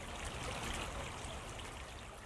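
Shallow stream running over a gravel bed, a faint, steady wash of water.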